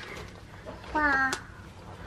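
A toddler's short wordless vocal sound about a second in, a single held note on a nearly level pitch.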